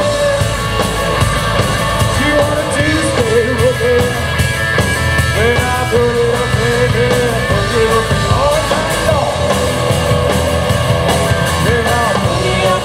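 Live blues-rock band playing loudly: electric guitar, bass guitar and drum kit, with a lead line that holds and bends its notes over them.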